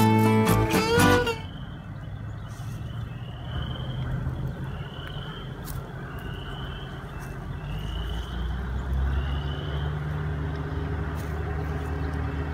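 Guitar music that stops abruptly about a second in, giving way to outdoor ambience. The ambience is a steady low rumble with a bird's short rising chirp repeated five times, about every one and a half seconds.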